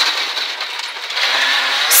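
Ford Escort Mk2 rally car's engine heard from inside the cabin through a tight hairpin: the sound eases off to its quietest about a second in, then picks up again with a steady tone as the car drives out.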